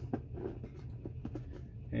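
Light clicks and handling noise of a plastic juice bottle as its plastic screw cap is turned on, over a low steady hum.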